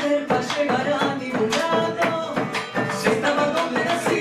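Live Argentine folk music from Santiago del Estero: a woman's voice singing over strummed guitars and a bowed violin, with regular percussive strokes from strumming and drum.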